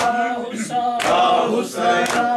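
A group of men chanting a nauha lament in unison, with rhythmic matam chest-beating, their palms striking their chests together about once a second.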